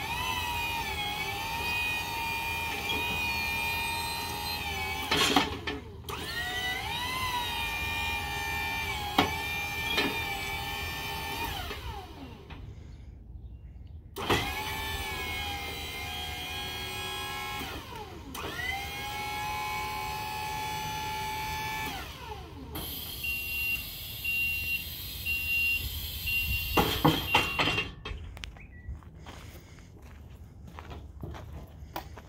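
JLG electric scissor lift running: its motor whines in several runs that rise in pitch as each starts and fall as each stops while the lift drives and the platform goes up. Near the end, the platform lowers with a hiss and an intermittent beeping alarm, and a few clunks follow.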